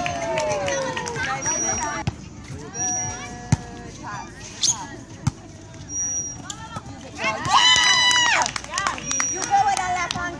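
Players and spectators shouting and calling during a volleyball rally, with sharp ball hits and brief high squeaks from the court. A long, loud shout comes near the end.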